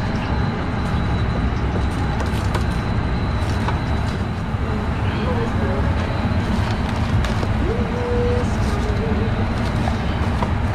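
Steady loud rumble of food truck kitchen machinery running, with a faint high whine held throughout. A few light clicks from the tongs and foam containers, and faint voices in the background.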